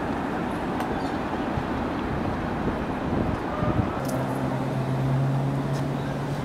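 Steady outdoor background rumble, like distant traffic. About four seconds in, a steady low hum joins it.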